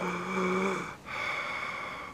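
A man breathing hard with two long, laboured breaths of about a second each, the first with a low voiced groan in it: the strained breathing of an allergic reaction to a bee sting.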